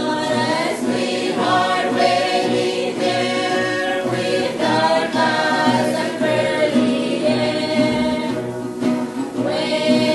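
A youth choir singing a Saipanese folk song together in several voices, from a 1970 recording.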